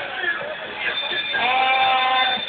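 A person's voice calling out, holding a long, slightly wavering note from about halfway in.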